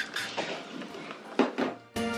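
Trigger spray bottle of rubbing alcohol spritzing, a short hiss at the start and two quick squirts about a second and a half in.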